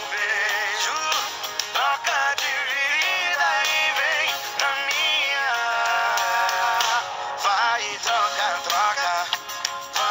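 Recorded sertanejo song playing, a male voice singing over guitar-and-band backing.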